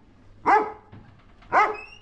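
A Doberman barks twice, with the barks about a second apart.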